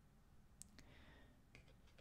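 Faint clicks and a brief soft swish as a tarot card is slid and lifted from a wooden table: a sharp click about half a second in, the swish around a second in, and two more light clicks near the end.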